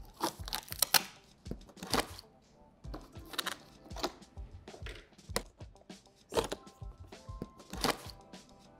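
Plastic locking clips being pulled out of a cardboard TV carton: a series of irregular sharp snaps and clicks with short cardboard scrapes in between.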